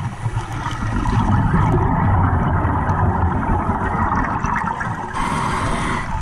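Muffled underwater rumble picked up by a camera in a waterproof housing, steady and low, with a brighter hiss coming in about five seconds in.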